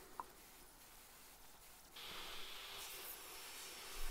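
A portable table saw's motor running faintly, mixed low: near silence for the first half, then a faint steady hiss with a thin high whine comes in about halfway.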